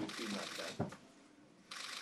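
Faint rustling of papers at a meeting table with low murmured voices, and a sharp click just under a second in. The rustle stops for most of a second, then comes again briefly near the end.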